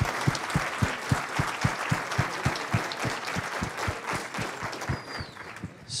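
An audience applauding, many hands clapping together, the applause dying down near the end.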